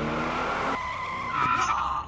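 A car's tyres squeal as the sedan accelerates away. The squeal grows louder past the middle and stops abruptly at the end, with the tail of dramatic music in the first second.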